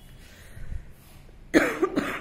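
A person coughing, two or three sharp coughs in quick succession near the end.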